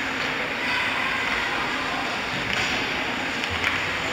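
Ice hockey skate blades scraping and gliding on the rink ice as a steady hiss, with a couple of light stick or puck clicks in the second half.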